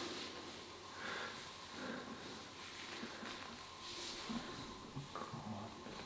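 Faint breathing and soft rustling of hands on skin and clothing in a quiet small room, as the lower back is felt by hand.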